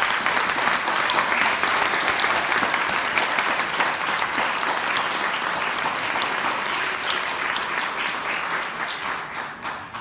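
Audience applauding, a dense run of clapping that fades out over the last couple of seconds.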